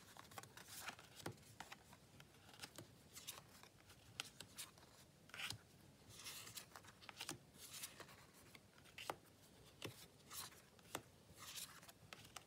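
Faint, irregular soft clicks and short swishes of tarot cards being slid off a deck and laid one by one onto a cloth-covered pile.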